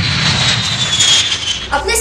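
Jet airliner engines roaring as the aircraft passes low, with a high whine that slowly falls in pitch. A woman's voice starts speaking near the end.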